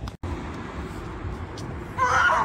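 Steady street background noise with a low traffic rumble. The sound drops out for an instant just after the start.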